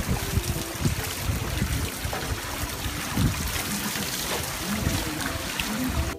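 Water streaming out of pipe ends and splashing down into a channel, a steady rush.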